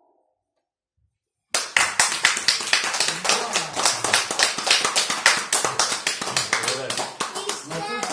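A small audience applauding, starting suddenly about a second and a half in after a brief silence, with children's voices over the clapping.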